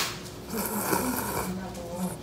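A person slurping thick kalguksu noodles, a hissing suck of air and noodles lasting about a second, just after a short click.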